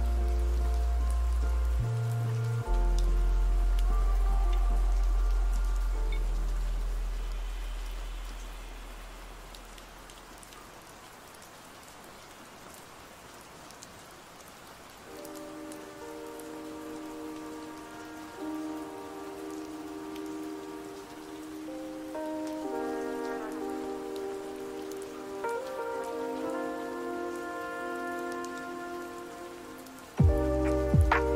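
Steady rain sound laid over lofi hip-hop music. One track with deep bass fades out over the first ten seconds or so, leaving a few seconds of rain alone. A new track with soft sustained keyboard chords begins about halfway through.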